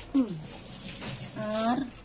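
A dog whining in two short, high cries: the first falls in pitch right at the start, and the second, longer one comes about a second and a half in. It is typical of a dog begging for food while fish is being cut.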